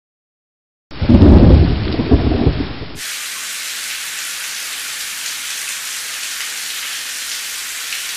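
A loud, low rumble of thunder starts about a second in and fades over two seconds. It gives way to a steady hiss of rain.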